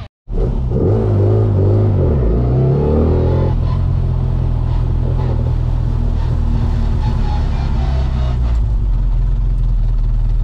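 Classic Mini Miglia race car's four-cylinder A-series engine heard from inside the cabin, revving up and down in the first few seconds as it drives off, then running at a steadier, lower note.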